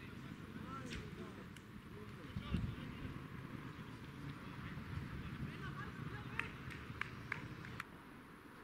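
Faint football-pitch ambience: distant players' voices calling across the field over a low outdoor hum, with a few sharp knocks near the end.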